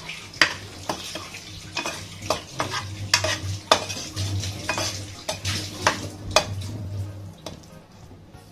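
A perforated steel slotted spoon scraping and clinking against the bottom and sides of an aluminium pressure cooker as onion-tomato masala is stirred and fried, with a light sizzle beneath. The clinks come irregularly, a few a second, and stop shortly before the end.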